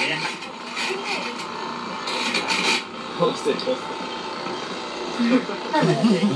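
Ears of fresh corn being rubbed against a corn-grating machine, a rough rasping scrape in strokes, strongest about two seconds in.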